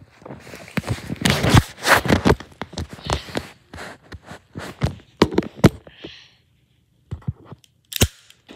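Close handling noise of the recording phone being moved and set down on a carpeted floor: rustling, scraping and crackling with many sharp clicks. It goes quiet briefly, then a few clicks follow and a sharp crack comes right at the end.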